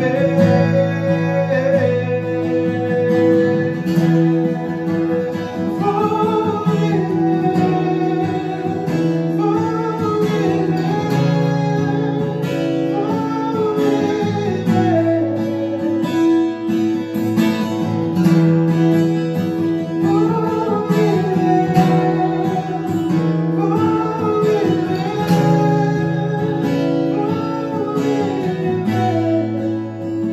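Acoustic guitar strummed in steady chords while a man sings a melody over it. The playing thins out near the end.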